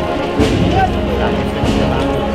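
Spanish wind band (banda de música) playing a processional march: sustained brass and woodwind chords with two percussive beats, about half a second in and near the end.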